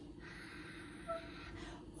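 Saucepan of cherries, sugar and water heating toward a boil on a gas burner, a faint, even crackling and popping that sounds like applause.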